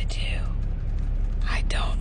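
Steady low rumble of a Ford pickup's engine and road noise heard inside the cab, with a whispered voice over it near the start and again in the second half.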